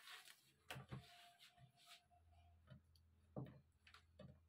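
Near silence with faint handling noises: a few soft taps and rustles as fabric and a cloth measuring tape are laid out and smoothed on a table.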